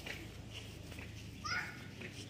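Faint distant children's voices, with one short, high, rising cry about one and a half seconds in, over a steady low hum.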